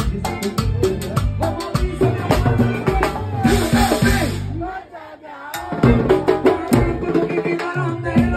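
Live band playing up-tempo Latin dance music with congas and a drum kit. A little past halfway a bright hissing wash swells, then the band briefly almost drops out before crashing back in at full level.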